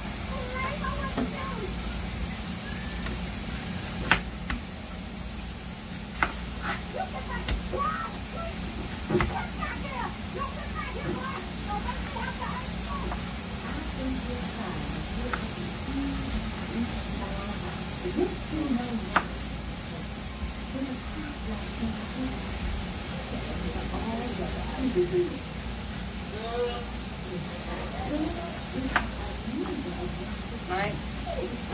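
Seasoned steak meat frying in a pan: a steady sizzle over a low hum. A few sharp clicks and knocks come scattered through, about 4, 6, 9 and 19 seconds in.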